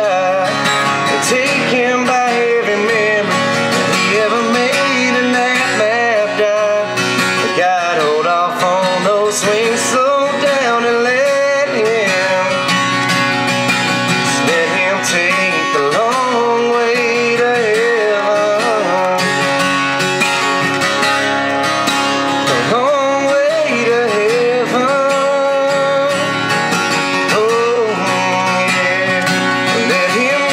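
A country song played live on acoustic guitar, with a wavering sung melody over the strummed chords.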